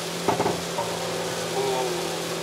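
Inside the cabin of a Hyundai Veloster N driving on a wet track: the 2.0-litre turbocharged four-cylinder holds a steady engine note under a constant hiss of tyres and water spray off the rain-soaked surface.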